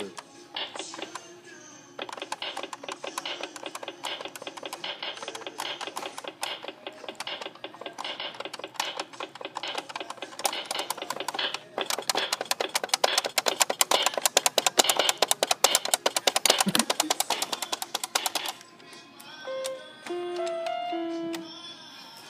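A 37-key toy electronic keyboard played fast: a dense run of rapid, clicky electronic notes for most of the stretch, loudest in the middle. Near the end come a few separate held notes.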